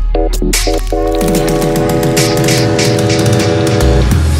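Electronic dance music mixed live on a DJ controller: a few short, stuttered chord stabs, then a held chord from about a second in that cuts off at the end, over a steady deep bass.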